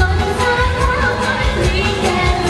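A woman singing a pop song live into a microphone over an amplified band or backing track with a steady bass beat.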